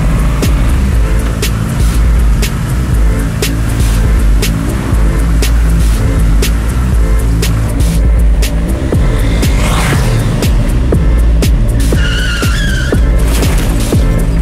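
Background film score: held low bass notes under a steady ticking beat. About ten seconds in a brief rising whoosh passes through it, and a wavering high squeal sounds a little before the end.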